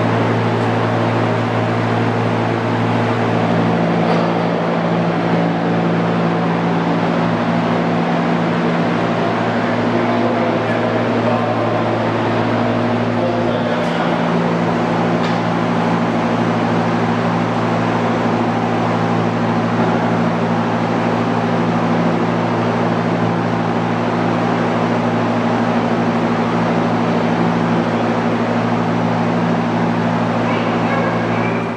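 A running machine makes a steady motor hum over an even rushing noise, with no pauses.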